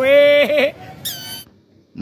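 A toy whistle held in the mouth, sounded in one long pitched note that bends at each end, then a short high squeal about a second in.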